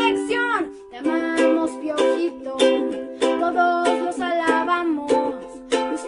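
A girl singing while strumming a ukulele in steady strokes, with a brief pause in the music about a second in.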